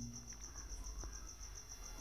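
Faint insect chirping: a steady high-pitched pulsing, about five pulses a second, with a soft tick about a second in.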